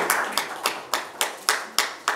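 A few people clapping their hands in a steady, even rhythm, about three or four claps a second, growing fainter toward the end.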